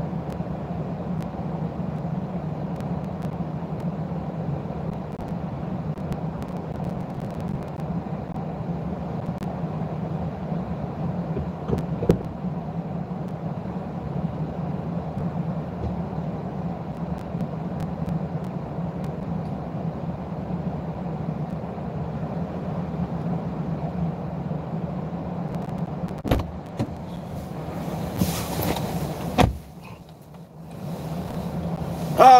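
Steady low hum of a parked car idling, heard inside the cabin, with a single knock about twelve seconds in. Near the end there is a clunk, then rustling as the driver climbs in and a door slams shut, after which the hum is much quieter.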